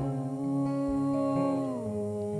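A voice holding one long hummed note that slides down near the end, over acoustic guitar strumming, in a devotional mantra song.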